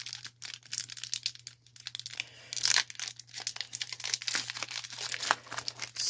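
A foil Pokémon trading card booster pack being torn open and crinkled in the hands: a dense, irregular run of crackles and rips.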